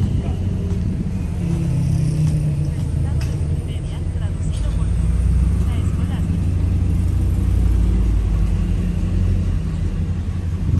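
Low, steady rumble of a motor vehicle's engine, swelling louder about halfway through and easing off near the end.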